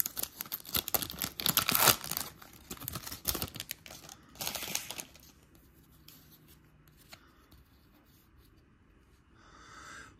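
Foil wrapper of a baseball card pack being torn open and crinkled, with the loudest rips about two seconds in and again after four seconds. After about five seconds it gives way to only faint handling sounds.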